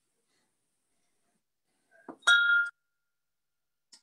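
A short glassy clink about two seconds in, a tasting glass knocked or set down, ringing briefly before it cuts off; otherwise near silence.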